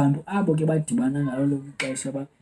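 A man speaking, with one sharp click near the end.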